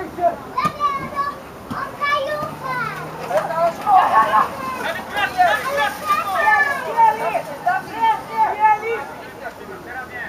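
Many high, overlapping young voices shouting and calling across a football pitch, louder around four seconds in and again a little after five seconds.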